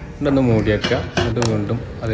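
A man talking in continuous speech, with a few light metallic clinks from cooking pots over his voice.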